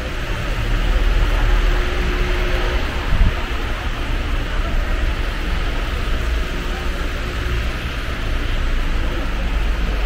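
Steady low rumble and hiss of shop background noise.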